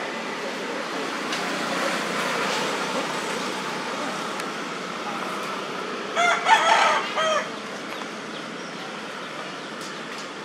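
A single loud, pitched animal call about six seconds in, lasting just over a second and broken into a few short segments, over steady background noise.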